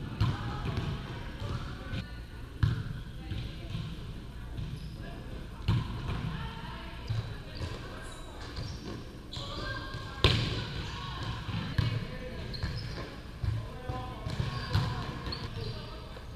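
Volleyballs being struck and bouncing on an indoor court, sharp slaps every second or two, the loudest about ten seconds in, over the murmur of players' voices in a large gym.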